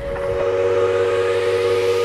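Electronic intro sound: a held synth chord of steady tones with a sweep rising in pitch beneath it, building up toward music.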